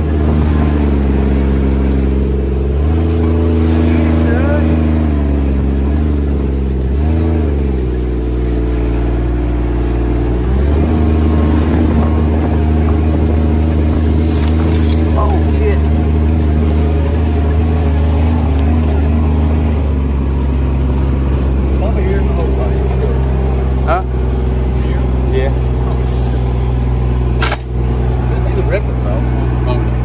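Three-cylinder diesel engine of a Kubota RTV 900 utility vehicle running under way, heard from the driver's seat. Its engine speed rises a few seconds in, dips and climbs again, then settles lower about twenty seconds in. A couple of knocks come near the end.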